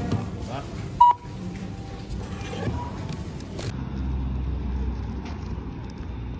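A supermarket self-checkout scanner gives one short, loud beep about a second in as groceries are scanned and handled. After a few seconds the sound changes to a steady low rumble.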